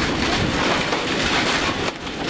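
A loud, steady rushing noise with no voice.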